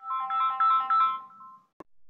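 An electronic melody like a phone ringtone: short, clean beeping notes that step between a few pitches, stopping about three-quarters of the way in, followed by a single brief click.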